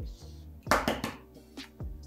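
A hen's egg knocked against the rim of a stainless steel mixing bowl to crack it: one short, loud crack a little under a second in. Background music with a soft beat plays throughout.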